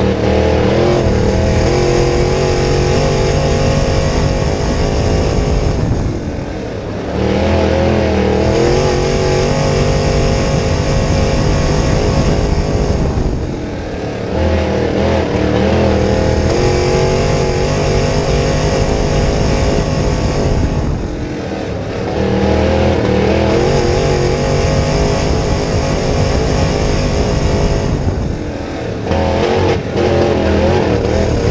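Crate Late Model dirt race car's V8 engine heard from inside the cockpit, running hard at high revs, then easing briefly about every seven and a half seconds as the driver lifts for each turn before building back up to full throttle.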